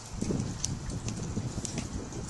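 Dry fibrous tinder crackling and rustling as a hand presses a friction-fire coal into the bundle, with scattered sharp ticks. An irregular low rumble starts about a quarter second in.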